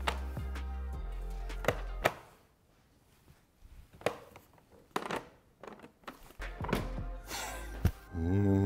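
Background music with a steady low tone cuts off about two seconds in. Then come a few sharp clicks and knocks as a rice cooker's lid is released and swung open, and a short rush of noise near the end as the lid lifts off the freshly cooked rice.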